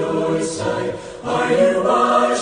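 Choir singing a country gospel hymn, the voices easing off briefly about a second in before the next phrase comes in fuller.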